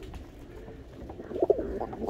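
A cock pigeon gives a brief, faint coo about one and a half seconds in, over a low steady background rumble.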